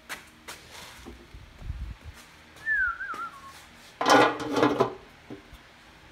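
A short whistle that falls in pitch and wavers, then about a second of loud metal clatter as a stamped-steel valve cover is handled and set down onto the cylinder head, with light clicks of handling before.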